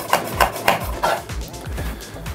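Chef's knife chopping a green chili on a wooden cutting board: a run of quick, even knife strikes about three a second, fading out in the second half.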